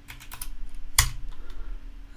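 Computer keyboard typing: a few quick keystrokes, then one louder key press about a second in and a few lighter ones after.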